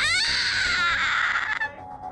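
A high-pitched, cry-like wail that swoops upward at the start, holds high and trails off about a second and a half in, over background music.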